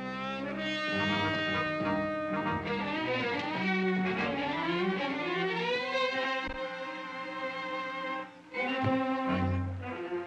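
Orchestral film score with strings and brass, entering suddenly and playing sustained melodic phrases, with a brief dip about eight and a half seconds in.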